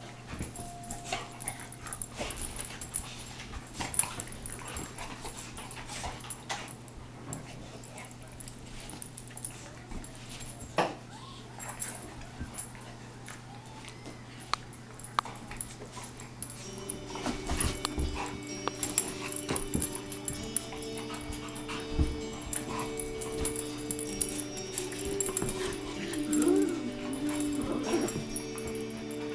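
A pit bull and a miniature pinscher play-wrestling: dog sounds with scuffling and sharp knocks scattered throughout. From a little past halfway, held tones at several pitches join in and last to the end.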